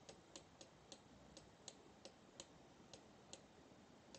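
Near silence with faint, irregular clicks, two or three a second, made while letters are handwritten into a drawing program on a computer.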